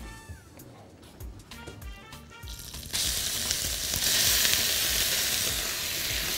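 Minced beef sizzling as it is dropped into a hot frying pan to be seared. The sizzle starts suddenly about three seconds in and then holds steady.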